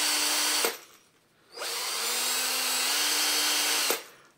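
Cordless drill running, spinning a brass plane adjustment wheel being polished with Brasso. It runs steadily, stops a little over half a second in, starts again about a second later, rises slightly in pitch near three seconds, and stops just before the end.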